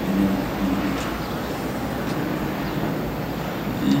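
Steady outdoor city background noise: a low, even hum of distant road traffic.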